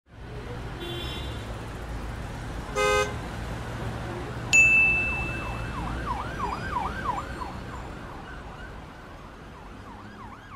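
Street sounds over a steady low rumble: a short, loud beep about three seconds in, then a sudden ding, the loudest sound, that rings away. An emergency-vehicle siren follows, yelping up and down about three times a second and slowly fading.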